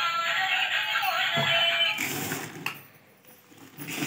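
Electronic tune with a synthetic-sounding voice from a baby walker's musical toy tray, cutting off about two seconds in. A short clatter follows, then a quieter moment before a rattling noise starts near the end.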